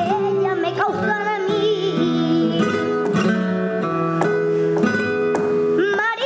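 Flamenco song: a young girl's singing over a flamenco guitar. Her voice wavers through melismatic lines near the start and comes back right at the end, while the guitar fills the middle with plucked notes and strums.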